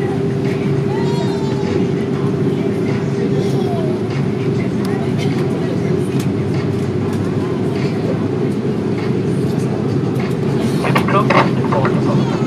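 Cabin noise of an Airbus A330 taxiing: a steady low rumble and engine hum, with a steady hum tone that fades out about four seconds in.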